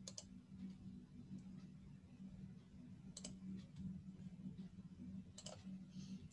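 Faint computer mouse clicks, a few scattered ones (one at the start, one about three seconds in, two near the end), over a low steady hum.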